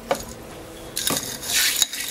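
Crushed ice being stirred in a tall cocktail glass: a gritty rattle with sharp clinks of ice against glass, starting about a second in after a couple of light clicks.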